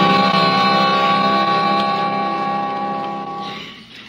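Radio-drama music bridge between scenes: a held chord that fades away near the end.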